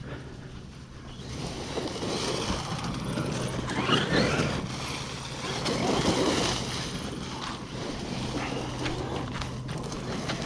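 Traxxas Maxx V2 RC monster truck driving across grass, its Castle 1520 1650kv brushless motor on 6S. A rushing noise from the drivetrain and tyres swells about a second in. The motor's whine rises in pitch as it accelerates, around four seconds in and again near six seconds.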